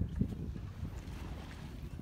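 Low, steady wind noise buffeting a phone's microphone, with one soft knock about a quarter second in.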